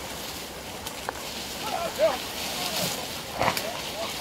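A beater pushing through brambles and long grass, with the undergrowth rustling and crackling and a few short wordless calls about two seconds in. A sharp crack about three and a half seconds in is the loudest sound.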